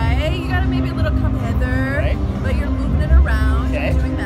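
A woman talking over loud background music with a deep bass line.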